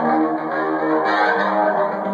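Custom-built electric guitar played through a combo amplifier: a quick riff of single notes that change every few tenths of a second.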